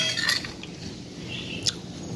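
Metal fork and spoon clinking and scraping on a ceramic plate: a sharp clink right at the start, a few lighter taps just after, and one more short clink near the end.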